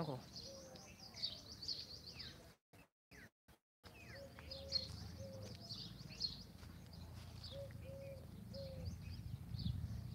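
Small birds chirping and twittering, with short low cooing notes from a dove repeating in little runs. The sound is faint and cuts out several times about three seconds in.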